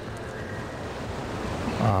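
Steady rushing background noise of a large hall picked up by the speaker's microphone, with no clear single event in it; near the end a man's voice starts an 'ah'.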